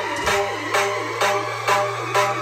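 Electronic dance music played loud through a GaleForce Audio F3 carbon-fibre coaxial horn speaker on a test wall, with about 800 watts going to the woofer. A steady beat about twice a second runs over a held bass note.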